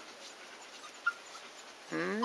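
Quiet dog sounds: faint panting and one short, high whimper about a second in.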